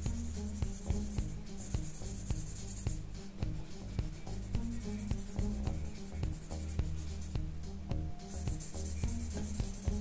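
Blending stump rubbed back and forth over sketchbook paper in repeated shading strokes, a dry scratchy rubbing that comes and goes, with soft music underneath.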